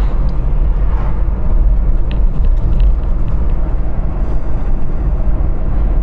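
Steady low rumble of a moving car heard from inside its cabin: road and engine noise, with a few faint ticks near the middle.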